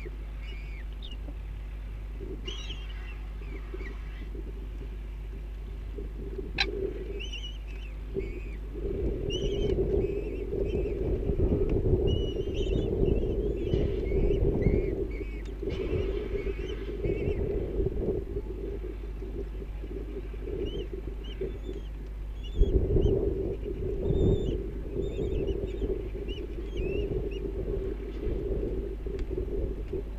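Many short, high bird chirps, with a low rumbling noise on the nest-box microphone in two long stretches, starting about a third of the way in and again near the end, over a steady low hum.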